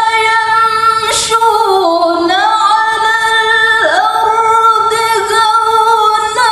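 A young male reciter's high voice in melodic Quran recitation (tilawah). He sustains long, ornamented phrases that slide and waver in pitch.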